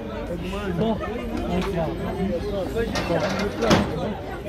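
People talking and chattering close by, with one short sharp knock a little before the end.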